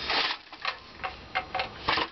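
Volcano II collapsible metal camp stove being collapsed: a short scrape of metal on metal, then a series of sharp metallic clicks as the body is lifted and its legs fold, the loudest click near the end.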